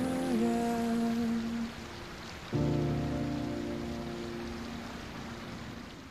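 Slow, tender background song with long held notes over a steady hiss. A new chord with a low bass note comes in about two and a half seconds in, and the music fades away near the end.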